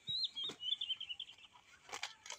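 A small songbird singing a quick run of high whistled, warbling notes that breaks into a fast trill. A couple of crisp snaps of cauliflower leaves being handled come about half a second in and near the end.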